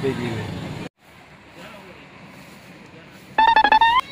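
Road and traffic noise heard from inside a car, cut off abruptly about a second in. Then quiet outdoor ambience, and near the end two short, loud pitched electronic tones, each gliding slightly up at its end.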